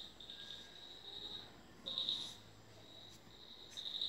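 High-pitched insect trilling, coming in repeated bursts of about half a second to a second.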